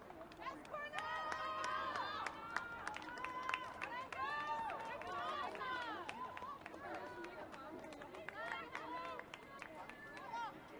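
High-pitched women's voices shouting and calling across a football pitch, loudest in the first half and again near the end, with scattered short sharp knocks.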